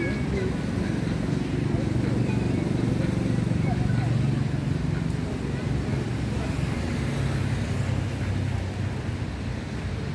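Road traffic: a motor vehicle's engine running past, its low hum rising over the first few seconds and fading toward the end, with faint voices of passersby.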